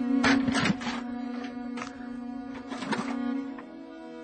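Background music holding a steady low note, with a shovel scraping into and tossing stony soil several times, loudest near the start.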